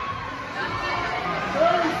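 Indistinct spectator voices and shouts echoing in an ice rink, with one voice calling out louder about one and a half seconds in.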